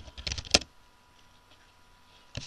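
Typing on a computer keyboard: a quick run of several keystrokes in about the first half-second, the last one the loudest.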